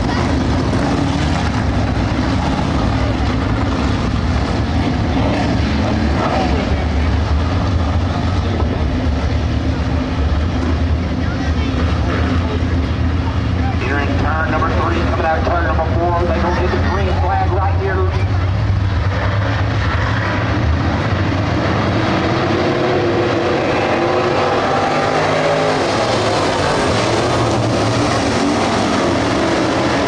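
A pack of dirt late model race cars with GM 602 crate small-block V8 engines running together on the track, a loud continuous drone from several engines at once. The engine note rises in pitch in the last several seconds as the field speeds up.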